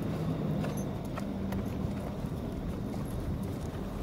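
A young grey Arabian colt walking under a rider on sand: soft hoofbeats with scattered light clicks, over a low steady hum.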